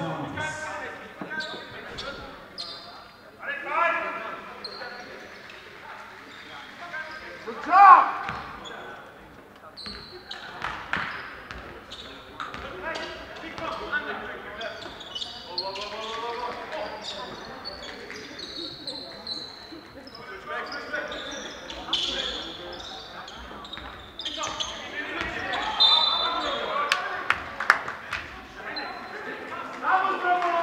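Live basketball game sounds in an echoing sports hall: the ball bouncing on the court floor, short high squeaks of shoes, and players and spectators calling out, with one loud shout about eight seconds in.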